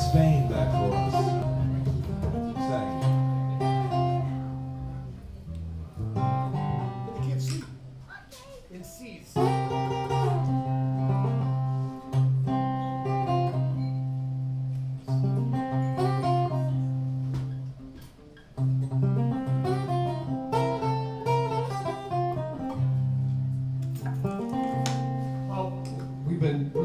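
Acoustic guitar picked in a slow instrumental passage: chords ring out over a held low bass note. The level sinks twice, about a third and two thirds of the way through, and each time comes back with a sharp fresh strum.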